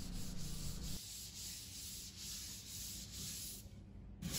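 Faint, repeated scratchy strokes of a hand sanding block rubbing over dried filler on a plasterboard joint.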